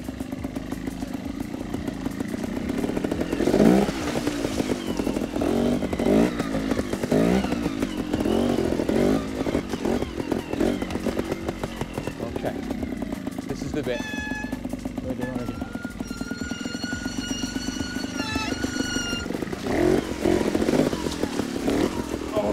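Trials motorcycle engine running low and blipped in short revs as it is ridden slowly over rocks, with water splashing as it crosses the stream about four seconds in. Later a high-pitched squeal is held for a few seconds.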